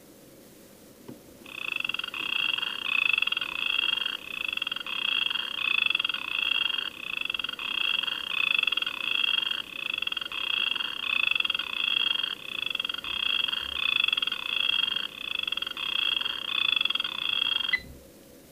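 Cube digital alarm clock sounding its electronic alarm: rapid high chirping beeps, about three a second in a repeating phrase, starting about a second and a half in and cutting off suddenly near the end.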